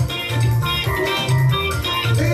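Live Caribbean-style band music from a Korg keyboard and an Ibanez electric guitar, over a pulsing low bass line.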